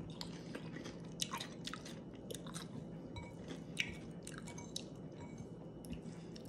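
A person chewing a mouthful of food close to the microphone, with many soft, irregular mouth clicks and wet smacks.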